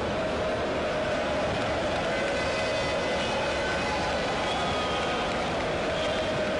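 Steady outdoor stadium ambience: a continuous noisy crowd murmur with no clear voices, joined from about two seconds in by faint high thin tones.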